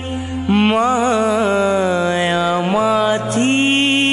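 Background devotional music, a Hindi Jain bhajan: a long held, wavering sung note over a steady low drone, with a new held note taking over a little after three seconds.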